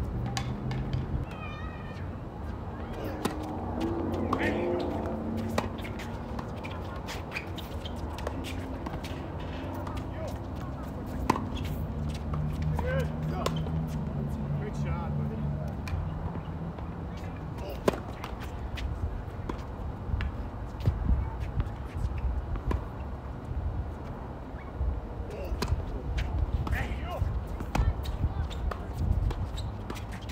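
Tennis balls struck by racquets during a doubles point on a hard court: sharp pops at irregular intervals, coming quicker near the end in a volley exchange at the net. Players' voices are heard in between, mostly in the first few seconds.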